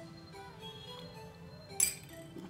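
Soft background music, with a single sharp clink near the end: a metal teaspoon striking a small glass cup.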